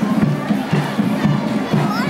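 Cheerleaders chanting a cheer in unison with sharp claps, over stadium crowd noise and a band's drums.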